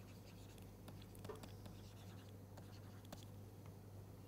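Faint scratching and light taps of a stylus writing on a tablet screen, over a steady low electrical hum.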